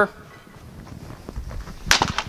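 A bamboo shinai is set down on a wooden floor with a single sharp clack near the end.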